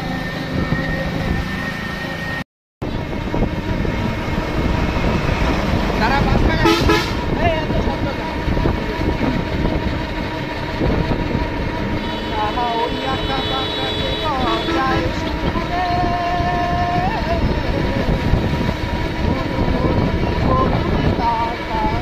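Road traffic heard from an open vehicle moving along a road: steady road and engine noise, with vehicle horns honking several times past the middle. The sound drops out briefly about two and a half seconds in.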